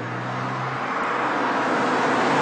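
BMW Z4 with its 3-litre twin-turbo straight-six driving up on approach, a steady engine note under rising tyre and road noise that grows louder as the car nears.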